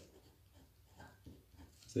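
Faint sound of handwriting: a few short scratchy strokes.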